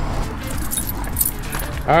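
Light metallic jingling of small metal pieces, like keys or dog tags, over a steady low rumble.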